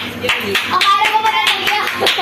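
Hand clapping, a run of quick, uneven claps, with children's voices talking over it.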